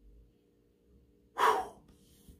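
A man's single sharp breath, a gasp-like intake, about one and a half seconds in, after a quiet stretch with a faint steady hum.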